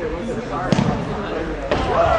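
Two sharp thuds of an indoor soccer ball being struck, about a second apart, over spectators' voices.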